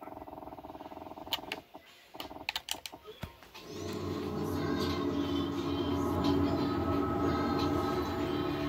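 A steady tone for the first second and a half, then a few sharp knocks and clicks of the camera being handled, then music from a television speaker starting about three and a half seconds in and building up, heard through the room.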